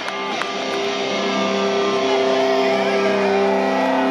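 Live rock band with an electric guitar holding one sustained, ringing chord.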